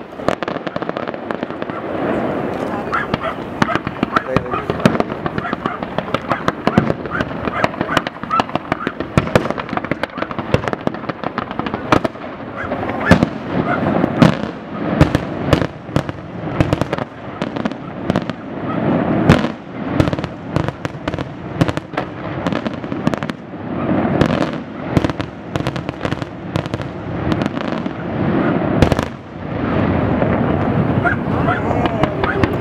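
Fireworks display: aerial shells bursting in quick succession with crackling, a dense, unbroken run of bangs that is loudest and most packed in the middle.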